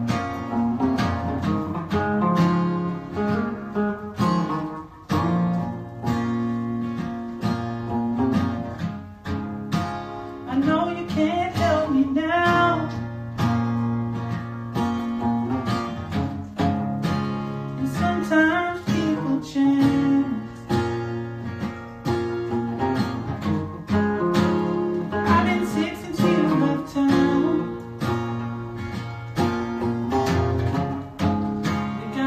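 Acoustic guitar strummed in chords with an electric guitar playing alongside, a song underway, with bending melody lines rising over the chords a few times.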